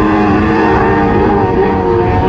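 A pack of F600 autograss racing buggies with 600cc motorcycle engines running hard together, several engines at different pitches overlapping and holding fairly steady revs.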